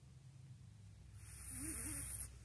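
A man's audible breath: after a second of near silence, a hissing intake of air grows louder toward the end, with a faint short hum in it.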